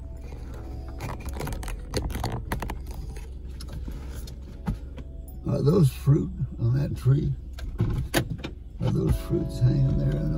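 Inside a stopped car with the engine running: a steady low idle hum, with scattered clicks and small rattles as the phone camera is handled and turned. Low voices come in about halfway through.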